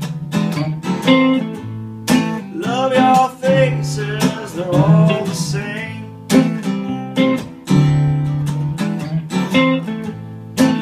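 Acoustic guitar strumming chords together with an electric guitar playing a melodic lead line, in an instrumental passage of a song.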